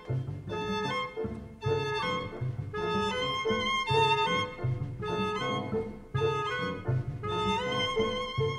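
Small jazz-tinged chamber ensemble of clarinet, violin, double bass, piano and drums playing an instrumental passage without voice. Violin and clarinet melody notes run over a steady walking bass line of about two notes a second.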